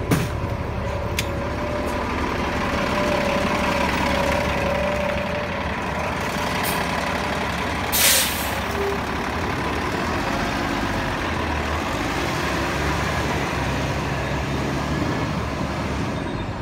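2019 New Flyer XD35 bus's Cummins L9 diesel running at the curb, with a short sharp hiss of air about halfway through as the air brakes release; the engine then carries on steadily as the bus pulls away.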